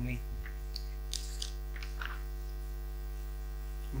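Steady electrical mains hum with its even overtones, picked up by the recording chain, with a few faint small clicks over it.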